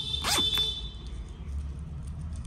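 A handbag's zipper being pulled shut in one short, quick run, a quarter of a second or so in.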